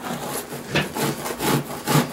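A two-handled blade scraping the flesh side of a salted whitetail deer hide laid over a wooden 2x4 beam, about five short push strokes a couple of times a second. The strokes are stripping the fleshy membrane so the pickle solution can soak into the skin.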